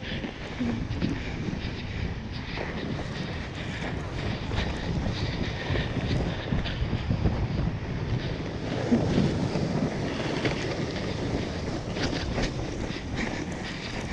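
Wooden sled's runners scraping and rumbling over packed snow on a fast downhill run, with wind buffeting the microphone. A rougher, louder stretch comes about nine seconds in.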